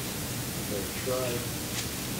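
A steady hiss of background noise, with a faint voice speaking briefly about a second in.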